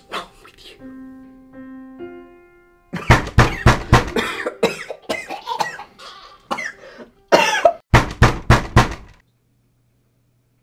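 A few held musical notes, then a person coughing hard in a long run of loud, irregular fits that cut off suddenly near the end.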